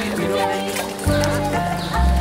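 Instrumental music: sustained chords over deep bass notes, with a new bass note coming in about a second in.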